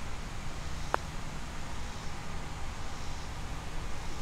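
A putter striking a golf ball on a long putt: one sharp click about a second in, over a steady low rumble of wind.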